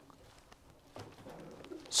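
Faint rustle and small ticks of thin Bible pages being leafed through by hand. A faint low murmur comes in about halfway through.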